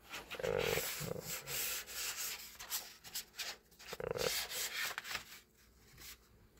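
A hand rubbing and sliding over sketchbook paper while a page is lifted and turned, a rough, scratchy friction noise that stops about a second before the end.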